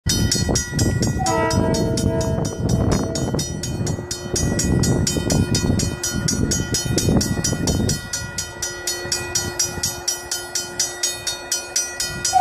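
Multi-note air horn of an approaching Metro-North train led by a Shoreliner cab car: one chord-like blast of about two seconds, a second into the clip. Under it, a rapid, steady ringing of a crossing bell, and a rough low rumble that fades out about two-thirds of the way through.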